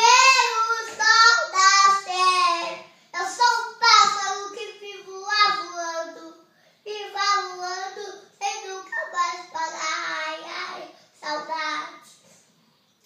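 A young boy singing unaccompanied, in several phrases separated by short breaths and pauses.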